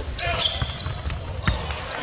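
Basketball game sounds on a hardwood court: a ball bouncing, with one sharp bounce about one and a half seconds in, over arena crowd noise.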